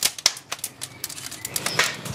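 Scrap-wood fire crackling in a grill: a run of sharp, irregular snaps and pops from the burning boards and old tool handles.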